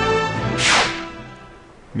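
A music bed with steady held notes gives way, about half a second in, to a single swoosh sound effect that sweeps quickly down in pitch and is the loudest thing here, then fades away.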